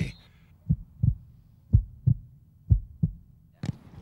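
Heartbeat sound effect: a low double thump, lub-dub, repeating about once a second, three beats in all. Near the end a single sharp knock as the football is kicked.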